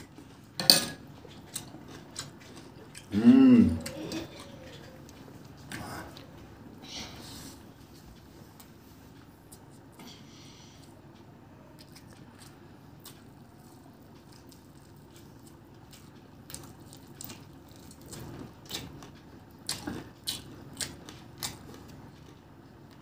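Close-up eating sounds: a sharp clink of a steel spoon against stainless steel dishes near the start, and a short hummed voice sound about three seconds in, the loudest moment. Then mostly quiet with scattered small mouth clicks, turning to a quick run of chewing and biting clicks near the end as rice and chicken are eaten by hand.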